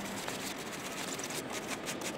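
Sponge rubbing acetone into a leather jacket: a soft, uneven scrubbing over steady outdoor background noise.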